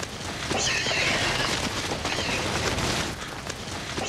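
Film soundtrack of a chase scene: a dense, steady din with shrill animal-like cries gliding in pitch, about half a second to a second in and again just past two seconds.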